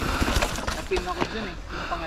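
A mountain bike rolling past close by on a dirt trail strewn with leaves and twigs: a rush of tyre noise with scattered crackles that dies down after about a second. Short bits of voice follow.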